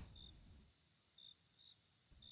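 Near silence with faint cricket chirps: a few short, high chirps at irregular intervals.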